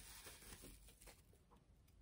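Near silence, with a few faint crinkles of plastic bubble wrap being handled in the first second or so.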